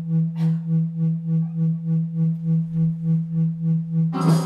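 A single sustained electronic keyboard note, low and steady, pulsing evenly about four times a second. A short hiss comes just under half a second in.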